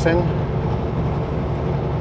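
Kenworth W900L semi-truck cruising on the highway: a steady, low engine and road rumble.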